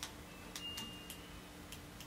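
Handling noise of a vinyl LP being turned over in the hand: about half a dozen light, irregular clicks and ticks of fingers and the record's edge, with a faint brief high squeak just under a second in.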